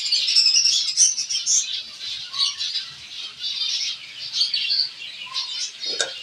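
Zebra finch colony calling: many short, high chirps overlapping, busiest in the first second or so.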